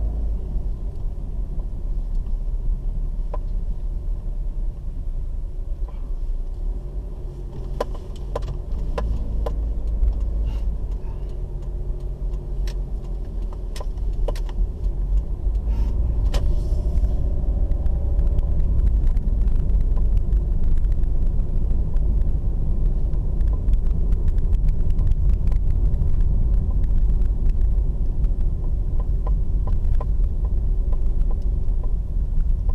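Car cabin noise while driving: a steady low rumble of engine and tyres, heard from inside the car. Scattered sharp clicks and rattles come through the middle stretch, and the rumble grows louder a little past halfway and stays up.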